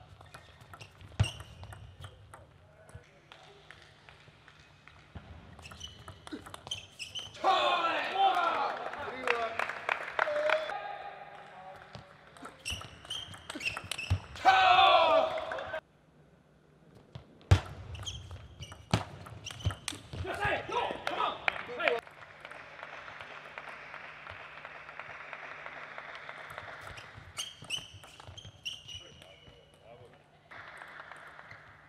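Table tennis ball clicking off bats and table in rallies. Loud shouts come twice, about a quarter of the way in and near the middle.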